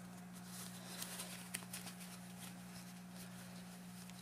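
Faint rustling and light clicks of a metal canteen being handled in its cloth cover, over a steady low hum.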